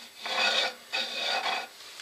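A pencil scratching across the face of a sycamore bowl blank in about three short strokes, marking out a line.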